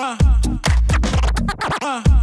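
DJ scratching a vinyl record on a Technics turntable over a hip-hop beat: quick back-and-forth pitch sweeps of the scratched sample, mostly falling, cut up by the crossfader, with a deep bass beat underneath.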